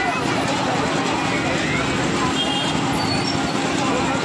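Busy fairground din: many voices mixed over a steady low mechanical hum, holding at a constant loud level.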